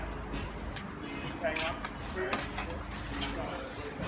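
Indistinct, low talking with a low background rumble that fades about a second in.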